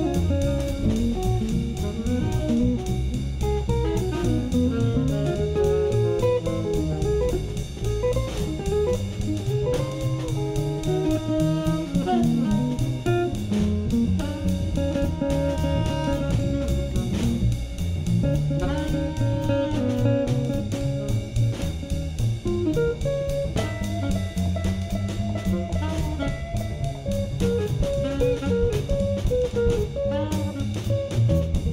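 Live small-group jazz: a hollow-body electric guitar prominent over upright bass and a drum kit, with a steady swing feel.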